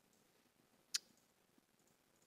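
A single sharp computer mouse click about a second in, against near-silent room tone.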